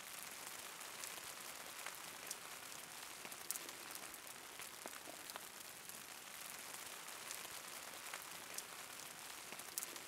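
Faint steady hiss with scattered small, irregular ticks: a light patter of falling precipitation, wet snow or rain.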